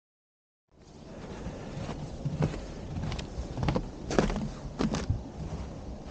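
Footsteps on a snow-covered wooden stairway: about six irregular steps, over a steady low rumble that starts under a second in.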